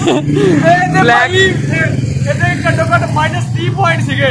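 Men's voices talking over the steady low hum of a car engine idling.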